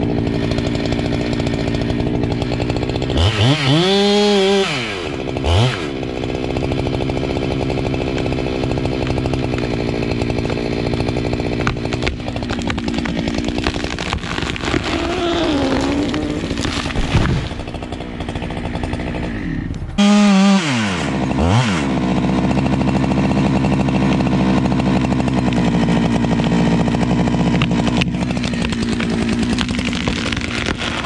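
Gas chainsaw cutting through a Douglas fir trunk, making the back cut to fell the tree. The engine holds a steady pitch under load, and twice, about 3 s in and about 20 s in, its pitch rises sharply and falls again.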